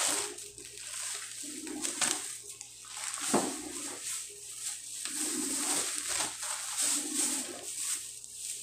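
Plastic shopping bags and packaging rustling and crinkling in uneven bursts as items are handled and pulled out, with a single sharp click about three seconds in.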